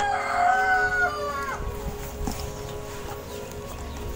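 A rooster crowing: one long call, already under way, that ends about a second and a half in.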